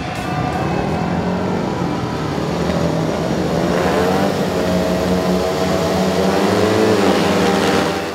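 Four speedway bikes' single-cylinder engines revving together at the starting tapes, their overlapping notes wavering up and down and building slightly in loudness.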